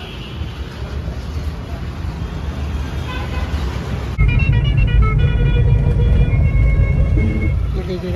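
Street traffic: vehicle engines and road noise with people's voices in the background. About four seconds in it switches abruptly to a louder, deeper rumble of passing traffic.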